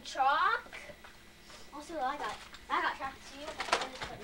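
A young child's voice making wordless sounds: a high call sliding downward at the very start, then a few short vocal sounds, with a single sharp knock of plastic toys shortly before the end.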